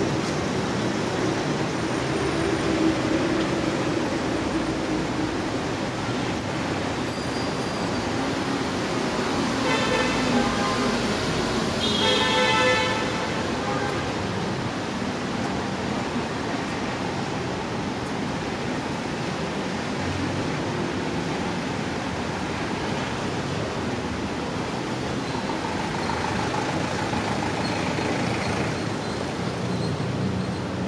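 Steady rush-hour road traffic noise from a busy city avenue, with a vehicle horn sounding briefly twice around the middle.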